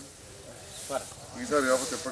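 Men's voices talking, a short phrase about a second in and more talk near the end, over a high hiss in the background.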